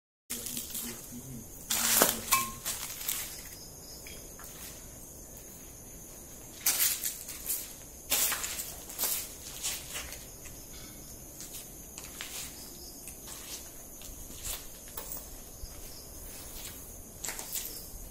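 Steady high-pitched chirring of night insects, with scattered sharp knocks and scuffs on top. The loudest knocks come about two seconds in and again around seven and eight seconds.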